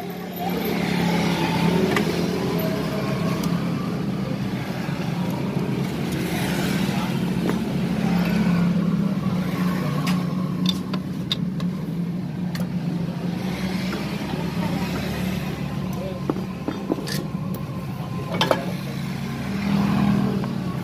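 A steady low engine-like drone, with a few sharp metallic clinks of hand tools against the floor and parts.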